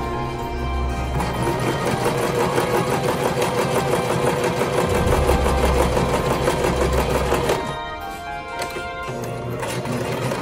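Electric home sewing machine running, its needle stitching cotton fabric in a fast, even rhythm, then stopping about eight seconds in.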